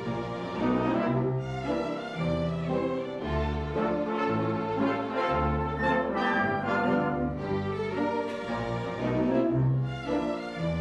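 Symphony orchestra playing a film-score suite: brass and bowed strings together with grand piano, over a bass line that moves note by note.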